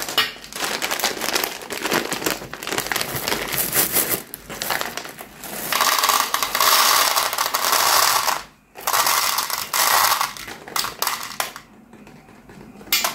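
M&M's candies pouring out of a plastic wrapper into a metal tin, a dense rattle of hard candy shells on metal, with the wrapper crinkling. Scattered clicks come first, then two long runs of pouring in the second half with a short break between them.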